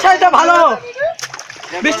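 Wet mud splashing under two wrestlers' bodies as they grapple, with a short splash about a second in. A loud voice calls out over the first half, and another starts near the end.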